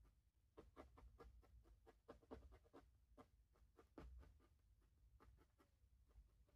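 Faint, quick stabs of a barbed felting needle poking into wool fibre, about three pokes a second in an uneven rhythm, thinning out over the last couple of seconds.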